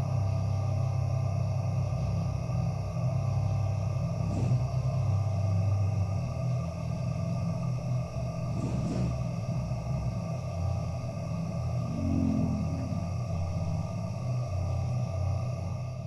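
Ambient electronic music: a low sustained drone with several steady higher tones held above it, and a couple of soft swells drifting through.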